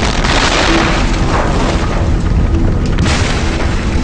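Explosions on a film soundtrack: a loud blast and rumble right at the start, and another blast about three seconds in, with music faintly underneath.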